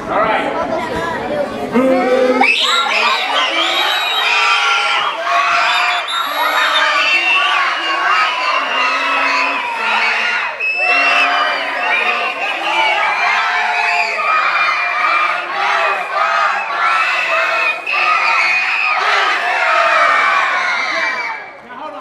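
A large group of children singing a booster song together, very loudly. The singing starts about two seconds in and breaks off near the end.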